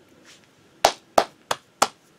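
Four sharp handclaps in quick, even succession, about three a second, a slow sarcastic clap of exasperation.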